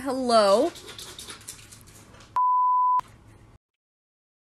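A short wavering vocal call, dipping and then rising in pitch, followed about two and a half seconds in by a steady electronic beep tone lasting just over half a second, like a censor bleep. The sound then cuts off abruptly.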